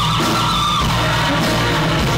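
Live rock band playing loud with electric guitars and drums, a held note sliding slightly upward and fading out just under a second in.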